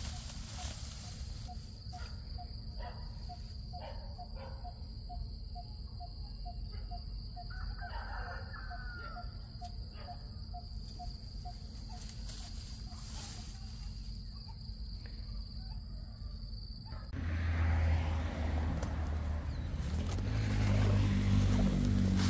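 Outdoor ambience in grass and scrub: a steady high-pitched insect drone, with a quick regular series of short low pips for the first half and a brief gliding call about eight seconds in. About seventeen seconds in, the drone stops and louder rustling and handling noise takes over.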